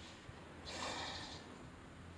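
A person's short breathy exhale close to the microphone, starting a little over half a second in and lasting under a second, over a faint steady low hum.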